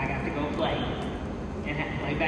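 Quieter speech and voices between louder remarks on a microphone.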